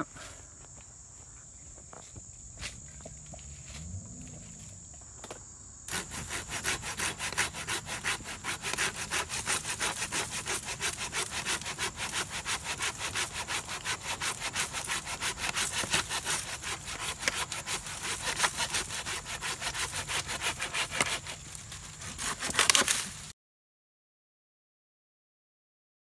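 Curved-blade pruning saw cutting through a weathered log with fast, even back-and-forth strokes. It starts about six seconds in, ends with a louder flurry of strokes, and cuts off suddenly just before the end.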